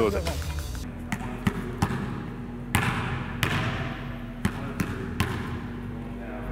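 A basketball bouncing on a gym floor, about eight irregularly spaced bounces that echo briefly in the hall.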